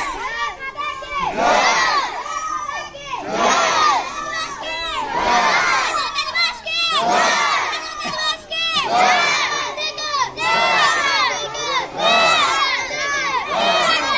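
A group of schoolchildren shouting patriotic slogans in unison, one loud chorus about every two seconds.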